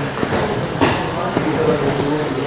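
Indistinct voices of people talking in a gym hall, with one short knock a little under a second in.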